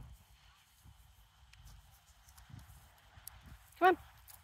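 Quiet outdoor ambience: faint low rumbling and soft thumps, likely wind and handling on a phone microphone, under a faint steady high-pitched tone, with a woman's brief spoken "come on" at the end.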